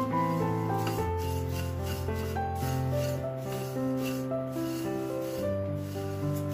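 Dry beaten rice flakes (aval) being stirred with a silicone spatula in a stainless steel pan: a repeated rubbing, scraping rustle of the flakes against the metal. Background music of slow, sustained notes plays under it.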